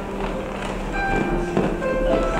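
Church organ playing slow, sustained chords, the notes held steady and changing one by one, with a couple of soft knocks.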